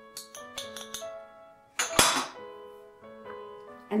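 Light keyboard background music with held notes. About two seconds in comes one sharp glass clink, a small glass prep bowl knocked or set down on a tiled counter.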